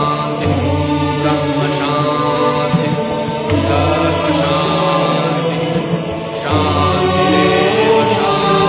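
Sanskrit mantra chanted in long held vocal lines over music with a steady low drone.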